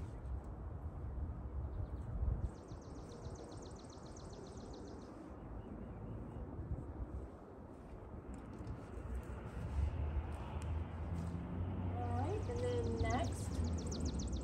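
Outdoor ambience over a low steady rumble: a bird's fast, even trill lasting about three seconds, starting a couple of seconds in, with a similar trill again near the end.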